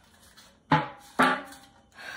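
Two sharp metallic clanks, each with a short ringing tail, about half a second apart: the lid and body of a vintage metal tin knocking together as they are handled.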